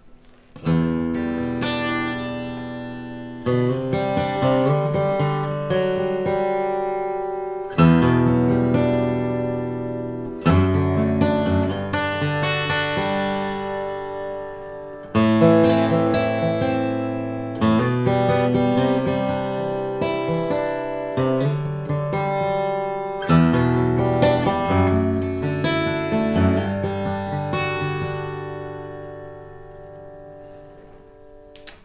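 Handmade Gallinaro Aqstica OSH offset-soundhole acoustic guitar, a medium jumbo with a Sitka spruce top and rosewood back and sides, played in slow arpeggiated chords. A new chord comes every two to three seconds and is left to ring, and the playing fades out near the end. Heard through the camera's built-in microphones.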